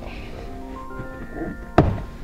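Background music of held tones, with one sharp thunk near the end as the plastic rear threshold trim panel is popped loose from its clips.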